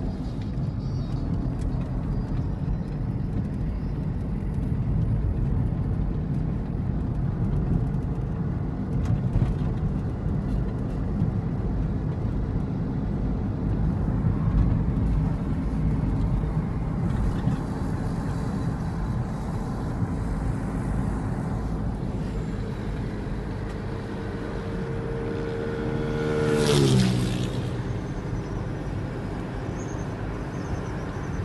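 Steady road and engine noise heard from inside a moving car. Near the end a passing vehicle's engine tone grows louder, then drops sharply in pitch as it goes by.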